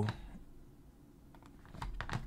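A few faint computer keyboard clicks, starting about a second and a half in.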